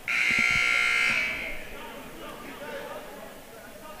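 Basketball gym scoreboard horn sounding once, a steady high buzz lasting about a second and a half, signalling the end of a timeout. Faint crowd chatter in the gym follows.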